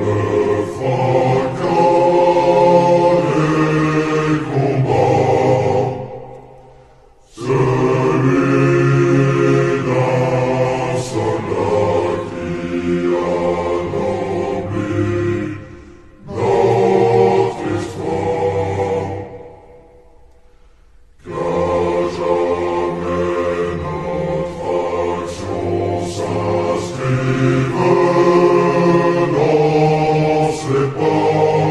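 A choir singing a French military officer cadets' promotion song, slowed down with heavy reverb. The singing falls away twice into a fading reverb tail before the next phrase comes in: once near six seconds and again around nineteen seconds.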